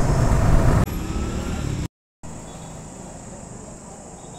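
Motorcycle riding noise, the engine with wind rushing over the helmet microphone, cut off abruptly under a second in. After a brief total dropout there is only a much quieter, steady background hum.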